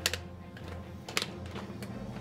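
Plastic clicks from a large plastic dinosaur action figure being handled, its legs' internal linkage clicking as they are moved: a sharp click at the start and another about a second in.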